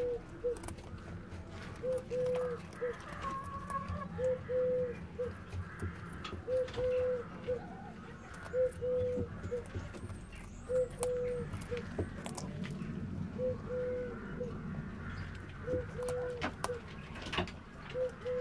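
A dove cooing over and over, each phrase a long steady note followed by a short one, repeating about every two seconds. Between the coos there are sharp little crunches from a German giant rabbit biting and chewing a raw carrot close by.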